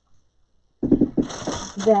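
A short pause, then a woman's voice speaking from a little under a second in.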